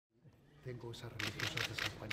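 Rapid camera shutter clicks, several a second, over faint voices of men talking.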